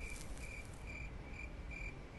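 Crickets chirping: a short, high chirp repeating at an even pace, about two to three a second, over a faint low rumble.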